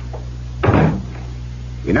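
A door shutting once, about half a second in, a radio-drama sound effect marking a character's exit. A steady low hum from the old recording runs under it.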